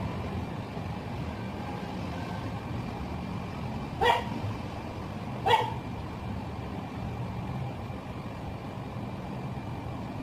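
A dog barks twice, two short barks about a second and a half apart, over the steady low hum of electric hair clippers at work.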